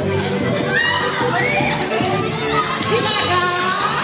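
A crowd of children shouting and cheering, many high voices at once, with dance music playing underneath.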